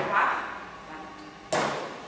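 A ball of clay slapped down onto the metal wheel head of an electric potter's wheel, a sharp thump about one and a half seconds in, as the clay is set in the centre for centring.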